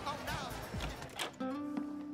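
Background music: a few plucked guitar notes ring out one after another, starting a little over halfway through, after fading party chatter and music.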